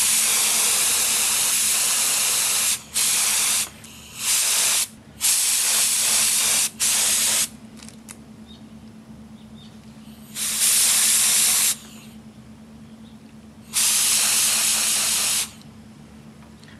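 HVLP gravity-feed spray gun atomizing paint, a loud hiss of air and paint: one long blast of about three seconds, then several short trigger pulls of about a second each with pauses between. This is a test spray to check the fan pattern, with the fluid valve one and a half turns open and the air and fan controls about halfway.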